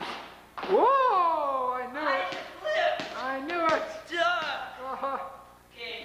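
Voices talking and calling out, with one long exclamation that rises and then falls about a second in. A few sharp thumps from the basketball play at the indoor hoop cut through, one near the start and one a little before the middle.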